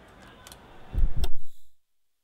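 Faint outdoor background noise with a few clicks, then two or three heavy low thumps about a second in, after which the sound cuts off to silence.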